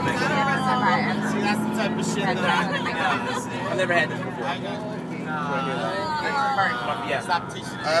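Several people chatting at once inside a moving coach, over the low hum of the bus.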